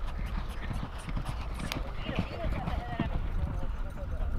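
Racehorses' hooves thudding on a sand track, many quick, irregular hoofbeats.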